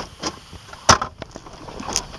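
A few short clicks and knocks, with one sharp click about a second in: the trunk-release button in a Pontiac Solstice's glove box being pressed and the release working.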